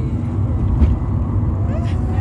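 Steady low rumble of a car heard from inside its cabin: engine and road noise.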